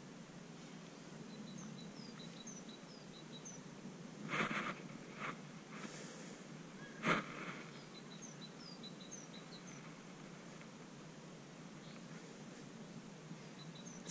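Quiet pond-side background with faint, high bird chirps in short runs. A few brief splashes of water come about four, five and seven seconds in, as a carp held in the water stirs.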